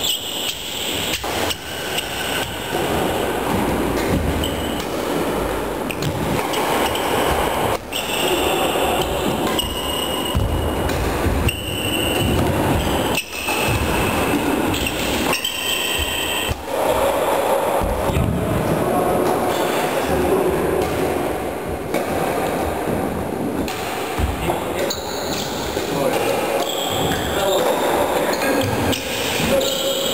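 Badminton rally sounds: sharp racket strikes on the shuttlecock at scattered moments, short high squeaks of sports shoes on the wooden floor, and a steady background of voices and play from other courts.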